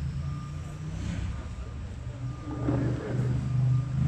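A vehicle engine running with a steady low hum, with a faint high beep sounding on and off.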